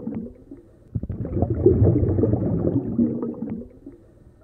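Bubbling, gurgling water in two long bursts: one dying away just after the start, the next rising about a second in and fading out near the end.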